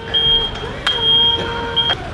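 DJI Mavic drone hovering, its propellers giving a steady whine, with a sharp click about halfway through; the whine cuts off just before the end.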